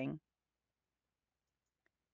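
The last of a spoken word, then near silence broken by a single faint click near the end, from a computer mouse button selecting the tab.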